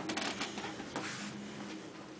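Chinchilla scrabbling about on wood-shaving bedding, short bursts of rustling in the first half-second and again about a second in, over a faint steady hum.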